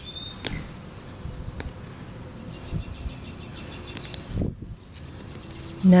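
Leafy ground cover rustling and crackling as it is pulled up by hand around a young hosta, with scattered short clicks. A brief high chirp comes just after the start.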